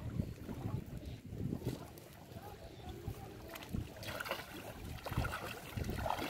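Wind buffeting the microphone in an uneven low rumble, with feet on wet mud; from about four seconds in, a brighter splashing as bare feet wade into shallow river water.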